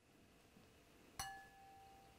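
Near silence with a single light clink about a second in. A ceramic bowl is struck by the metal tip of a long lighter and rings briefly with a clear, fading tone.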